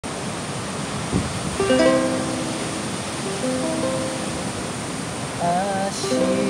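A ukulele plucked solo, picking out a slow melody; the notes begin about two seconds in, over a steady background hiss.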